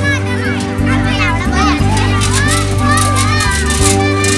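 Children's voices at play, short high calls rising and falling, over background music with steady held low notes.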